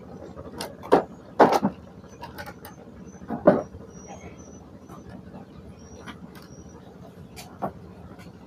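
A few knocks and thumps from people working around moored wooden fishing boats, over a steady low hum. A string of short high chirps comes in the middle.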